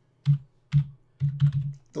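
Typing on a computer keyboard: about five separate keystrokes, unevenly spaced, as a short word is typed.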